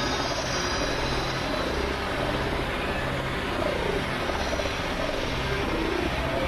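Experimental electronic noise drone from synthesizers: a dense, steady hissing wash with a low tone that pulses on and off in blocks and repeated falling sweeps, giving a machine-like, helicopter-like churn.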